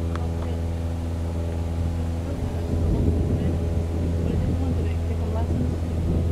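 A steady low engine hum with an even pitch, its upper tones shifting slightly about two seconds in.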